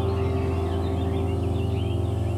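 A soft piano chord held and slowly fading, with small birds chirping over it.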